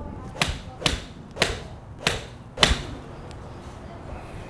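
Ping i15 7-iron striking range balls off a hitting mat: five sharp cracks in quick succession, about half a second apart.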